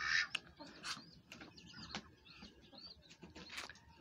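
Faint bird chirps: a scatter of short, high, curving calls, with a few small clicks, from birds in a poultry yard.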